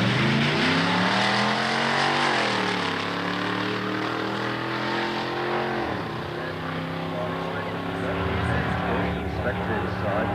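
Drag cars accelerating hard down the strip, engine pitch climbing through the gears. The revs drop sharply at two upshifts, about two seconds in and again near six seconds, then build slowly as the cars pull away.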